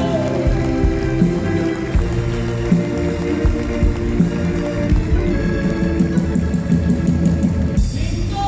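Live band playing an instrumental passage with no singing, an electric guitar over a steady beat.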